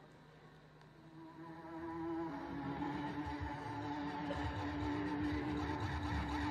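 A band's opening piece fading in: held electronic keyboard tones swell up from a quiet start, the main note stepping down a little about two seconds in, with a low rumble building underneath.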